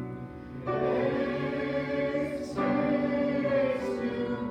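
Congregation singing a hymn with keyboard accompaniment, in held notes that change every second or two. A short break between phrases falls about half a second in.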